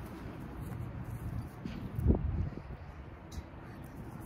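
Outdoor wind rumbling on the microphone, with one short sound about two seconds in.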